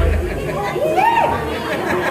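Indistinct voices and crowd chatter between songs at a live band show, over a low steady hum.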